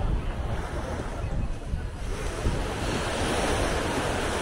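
Small surf breaking and washing up the sand, with wind buffeting the microphone. The wash grows louder a little past the middle.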